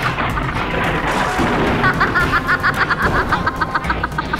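Dramatic soundtrack music with a woman's rapid, evenly pulsed villainous cackle. A noisy rushing burst covers it for about the first second and a half, and the cackle comes back about two seconds in.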